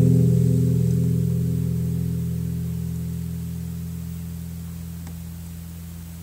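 Acoustic guitar's final chord ringing out and fading steadily away at the end of the song.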